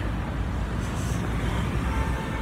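Steady low rumble of street traffic, mixed with wind buffeting the handheld microphone.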